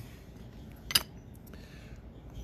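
One sharp click about a second in: a trading card in a hard plastic holder set up on a display shelf.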